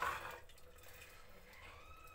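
A metal ladle scooping broth from a steaming clay cooking pot: a short splash of liquid at the start, then fainter liquid sounds as the ladle is lifted out.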